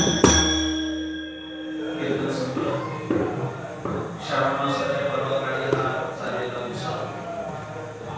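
Taal hand cymbals and pakhawaj drum end their strokes just after the start, leaving a held tone that fades out. From about two seconds in, a man's voice carries on alone over the hall's microphone.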